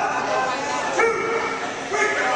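People shouting and yelling in a reverberant hall, with one drawn-out yell starting about a second in.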